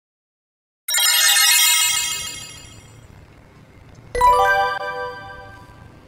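Logo intro sound effect: a bright, sparkling synthesized chime about a second in that fades over a couple of seconds, then a second, lower bell-like tone about four seconds in that also fades.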